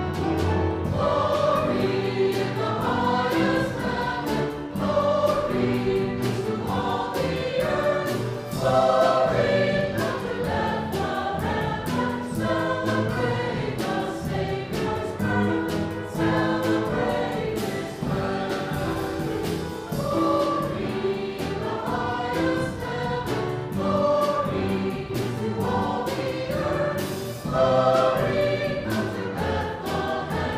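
Mixed church choir of men's and women's voices singing a cantata piece, with instrumental accompaniment.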